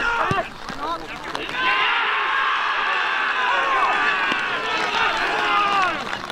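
Men shouting and cheering as a goal goes in: a few single shouts at first, then, about a second and a half in, a burst of many voices at once that holds until near the end.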